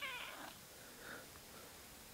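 A domestic cat's short, quiet meow, rising then falling in pitch, ending about half a second in.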